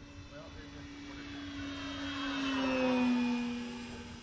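Electric E-flite Pitts S-1S 850mm RC plane flying past: the whine of its motor and propeller swells to a peak about three seconds in, drops slightly in pitch as it passes, then fades.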